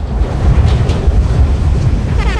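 Wind rushing over and buffeting the microphone of a camera mounted on a paraglider in flight: a loud, uneven low rumble.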